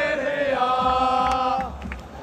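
A stadium stand of football ultras singing a chant in unison, holding one long note that tails off near the end.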